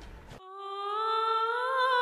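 Film soundtrack music: the music breaks off sharply about half a second in, and a single held humming note comes in, sliding slowly upward and swelling in loudness as a song opens.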